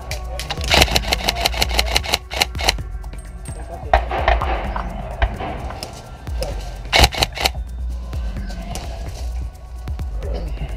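Airsoft rifles firing in rapid bursts of sharp cracks, heaviest in the first three seconds, with more bursts about four and seven seconds in, over background music.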